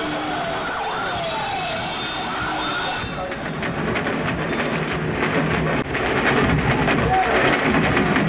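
A vehicle siren wailing in repeated sliding sweeps for about three seconds. Then hand drums, including a large bass drum, are beaten in fast strokes over a crowd, growing louder toward the end.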